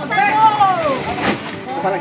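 Voices of people calling out, one long call rising and falling in pitch in the first second, followed by more shorter calls.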